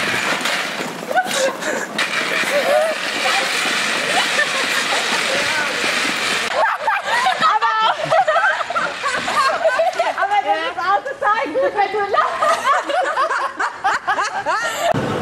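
Outdoor ambience with a steady rush of wind on the microphone and scattered faint voices. About six and a half seconds in it switches abruptly to a group of people close by laughing and chattering loudly.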